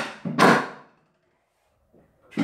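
Steel tube sliding over a threaded steel bar: two short scraping swishes in the first second.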